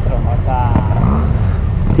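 A trail motorcycle engine running at low revs during a slow, tight manoeuvre, with the revs rising briefly a little after one second in.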